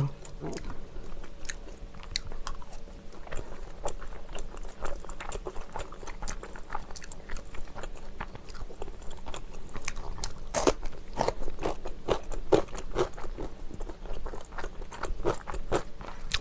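Close-up chewing with frequent irregular crunches: a person eating cheese dumplings and crisp radish kimchi.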